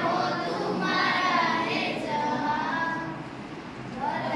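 A group of children singing together in unison, with long held notes; the singing softens shortly before the end.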